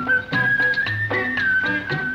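Instrumental interlude of an old Tamil film song: a high, pure-toned melody held in long notes with small steps in pitch, over a quick, even drum beat and low bass notes.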